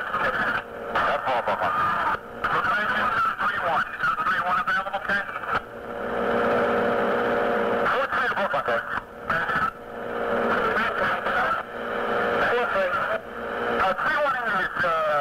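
FDNY two-way radio dispatch traffic: voices of dispatchers and fire units coming through thin and narrow over the radio channel, with a couple of seconds of steady open-channel noise midway between transmissions.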